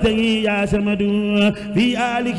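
Chanted recitation of an Arabic devotional poem, the melody held on long sustained notes with brief breaks between phrases.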